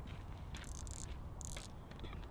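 Spinning reel giving two short ratcheting rasps, about half a second in and again about a second and a half in, as line is pulled off its spool.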